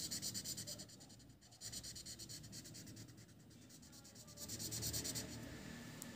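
Chisel-tip marker scrubbing back and forth on paper as it fills in a solid black area: faint, scratchy rubbing strokes, with two short pauses about a second in and around four seconds in.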